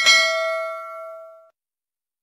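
Bell-ding sound effect from a subscribe-button animation, the notification-bell chime. It is struck once and rings with several tones, fading out about a second and a half in.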